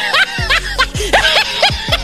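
Laughter sound effect: a run of high, rising-and-falling cackles, several to the second, over background music with a steady bass.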